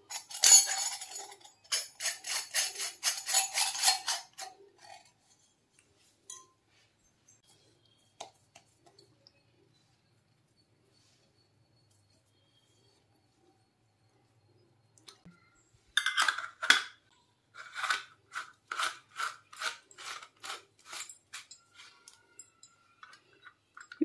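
Stainless-steel murukku press being handled: a quick run of metal clicks and clinks as its parts are fitted together, then a long quiet stretch while dough is packed in. About two-thirds of the way through comes a second, sparser run of sharp clicks as the threaded cap is turned onto the filled press.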